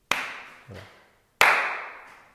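Two sharp slaps about 1.3 seconds apart, the second louder, each trailing off briefly: a hand striking a partner's arm during a sticking-hands (tai chi / xingyi) demonstration.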